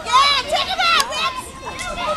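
Children's voices shouting at a high pitch, with the loudest cries just after the start and again about a second in.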